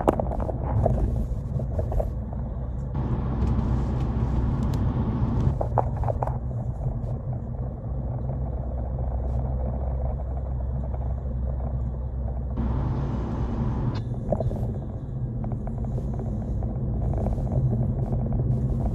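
Steady low rumble of a running motor vehicle, with two stretches of added hiss, a few seconds in and again past the middle.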